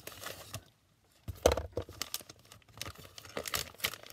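Clear plastic packaging crinkling and rustling as it is handled and pulled open, in irregular crackles with a short pause about a second in and one louder crackle soon after.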